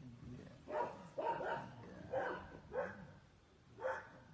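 A large dog barking in short bursts, about six sharp barks spread over a few seconds while being played with.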